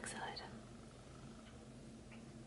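A woman's voice finishing a word, then near silence: faint room tone with a low steady hum.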